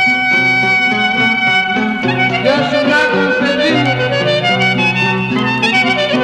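Clarinet playing the melody of a Greek tsamiko, held notes with ornamented turns, over a lower accompaniment that changes notes every second or so, from a 1936 recording.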